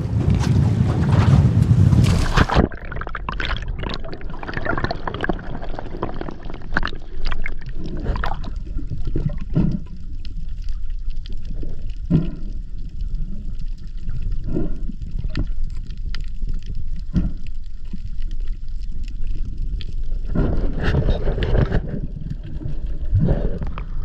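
A loud rush of water and wind at the side of a small boat for about two and a half seconds. Then muffled underwater sound: water moving around a submerged camera, with scattered clicks and knocks.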